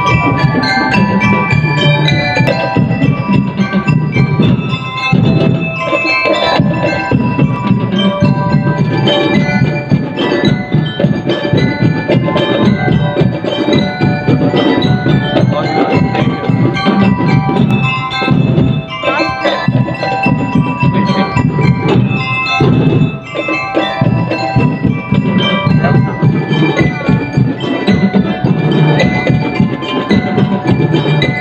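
Drum and lyre band playing, with bell lyres and other mallet percussion carrying the melody over drums.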